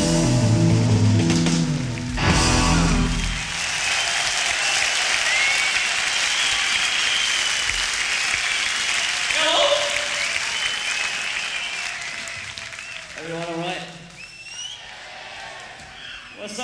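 A rock band's last chord with electric guitars rings out, then a concert audience cheers, claps and whistles. The applause fades near the end, with a few voices over it.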